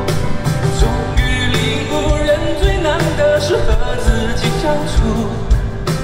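Male pop-rock singer singing live, with held, sliding notes, over band accompaniment with a steady beat.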